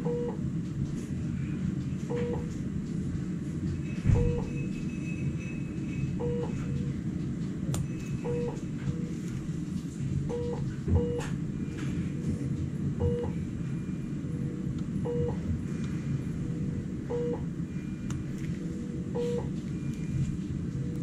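A short, low electronic beep from hospital equipment, repeating about every two seconds, over a steady low room hum, with a few faint clicks.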